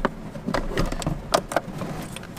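A scooter battery being wiggled loose and lifted out of its plastic battery compartment: several sharp knocks and scrapes, the loudest a little past one second in.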